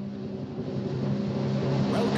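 Opening title music: a low sustained drone that grows steadily louder.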